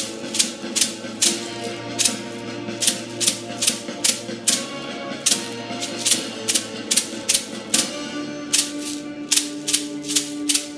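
A hand-held rattle shaken in a steady rhythm, a little over two strokes a second, over a low held tone that grows stronger near the end.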